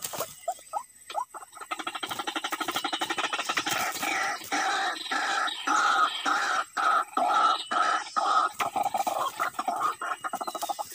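White-breasted waterhen calling: a rapid run of harsh repeated notes that starts about a second and a half in and breaks off briefly several times.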